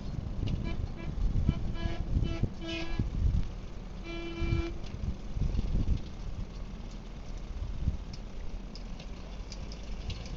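Home-made tractor's Dacia four-cylinder car engine running with a steady low rumble, while a horn gives a few short toots and then one longer toot about four seconds in.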